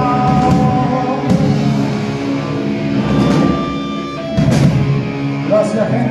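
Live rock band with distorted electric guitars, bass and drums holding the closing chords of a song, with a loud hit about four and a half seconds in.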